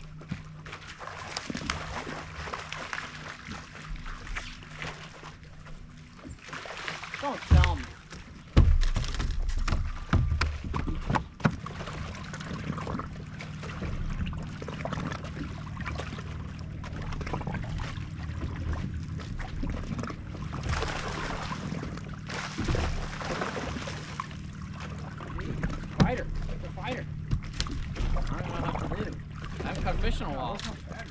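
Water lapping and sloshing against the hull of a fibreglass bass boat under a steady low hum, with heavy low rumbles of wind on the microphone about seven to nine seconds in.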